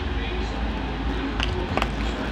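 Rustling and handling of a small cardboard toy package as it is opened and dug into, with a couple of faint clicks, over a steady low hum.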